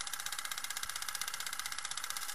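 Film projector clatter sound effect: a steady, rapid mechanical ticking at about twenty ticks a second.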